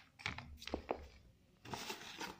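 Handling noise: a few light clicks and knocks in the first second as a handheld electric drill and its case are moved about on a tiled floor, then a short rustle near the end.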